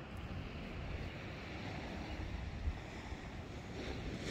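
Small waves washing in on a sandy beach, with wind rumbling on the microphone. There is one brief low bump about two-thirds of the way through.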